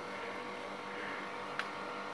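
Steady faint mechanical hum with a few faint steady tones in it, and one faint click about one and a half seconds in.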